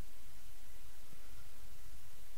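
Steady background noise of the voice-over recording, with no distinct sound events: a constant low hum and a faint even hiss.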